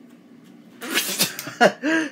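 A man lets out a sudden, loud, breathy sputter about a second in, reacting to the bitter taste of the aloe leaf he has just bitten, then starts to laugh near the end.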